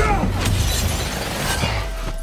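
Film-trailer music with a sudden shattering crash right at the start, a fight impact.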